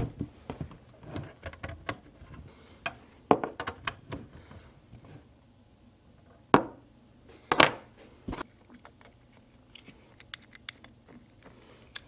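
Cable plugs being pushed into and fitted to the rear ports of a small desktop computer: scattered clicks, knocks, and small rattles of plastic and metal connectors, with a few sharper clicks in the second half.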